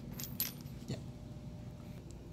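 A few light, high clinks of a spark plug and its small parts being handled against a concrete floor, mostly in the first half second.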